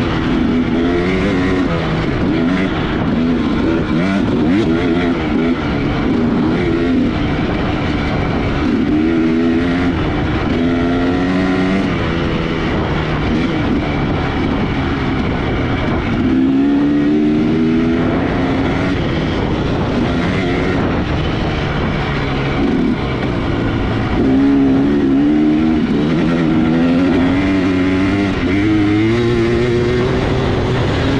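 Two-stroke engine of a 2018 Husqvarna TX300 enduro dirt bike under riding load, its pitch repeatedly climbing as it accelerates and dropping with each shift or throttle-off, over steady wind and trail noise.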